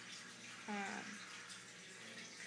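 A woman's single hesitant "uh" about two-thirds of a second in, over a faint steady hiss of background noise.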